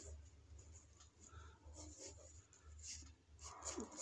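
Faint scratching of a pen drawing short looped strokes on paper, over a low steady hum.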